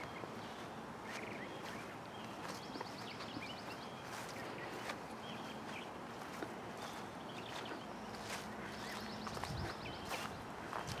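Quiet outdoor ambience: soft footsteps on grass with a distant bird trilling briefly twice.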